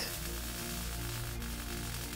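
MIG welding arc running steadily, heard as an even, finely crackling hiss, over background music with held low notes.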